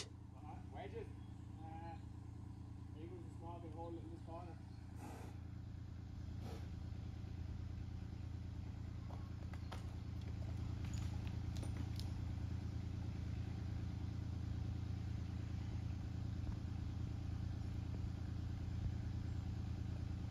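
A small engine idling, a steady low hum that grows slightly louder through the stretch, with faint voices in the first few seconds.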